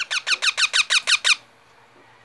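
Young parakeet giving a rapid run of about ten shrill, squeaky calls, roughly seven a second, each dipping in pitch, stopping after just over a second.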